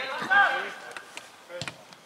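A player's shout on a football pitch, then a sharp thump of a football being struck about a second and a half in.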